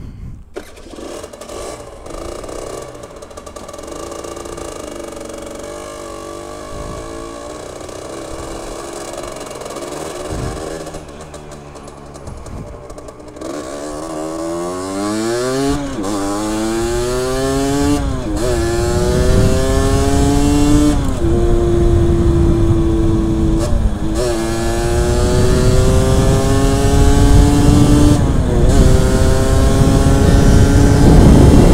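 Sport motorcycle engine pulling away slowly, then accelerating hard up through the gears: the pitch climbs and drops back at each of several gear changes in the second half. Wind noise on the helmet camera builds as speed rises.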